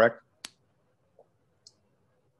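The last word of a man's spoken question, then a single sharp click about half a second in, and near silence with two faint ticks.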